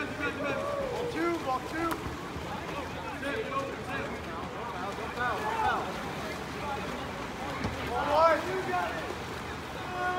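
Scattered shouts and calls from players and spectators over a steady wash of water splashing from swimming water polo players, with a louder call about eight seconds in.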